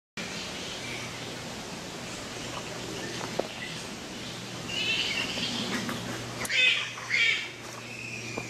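Harsh chattering animal calls from the roost trees: faint chirps at first, then three louder bursts of squabbling calls in the second half, over a steady low hum.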